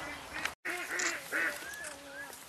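Farm animals calling: a quick series of short, arched, nasal calls after a brief dropout about half a second in, then two short gliding calls near the end.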